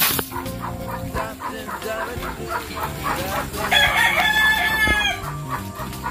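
A rooster crows once, a long call about four seconds in. Underneath, piglets chew and smack as they eat wet feed from a trough, a run of short, irregular smacks.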